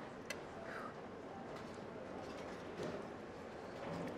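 Metal forks and spoons clicking lightly against a ceramic bowl as they dig into ramen: one sharper click shortly after the start, then a few fainter ones over quiet room tone.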